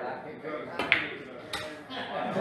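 Two sharp clicks of pool balls striking each other, the first the louder with a brief ring, about half a second apart, over room chatter.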